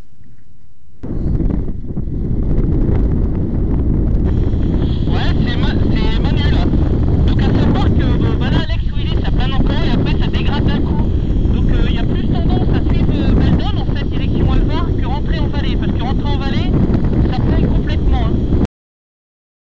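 Heavy wind buffeting a camera microphone in paraglider flight, a loud low rush that starts suddenly about a second in. Wavering voices can be heard faintly through it.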